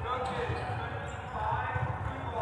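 Volleyballs thudding irregularly on a hardwood gym floor amid indistinct chatter of players in a large gym hall.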